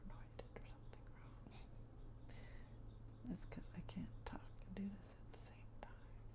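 Soft whispered murmurs over faint clicks and light scratching strokes of a nail polish brush on a paper template, with a steady low hum underneath.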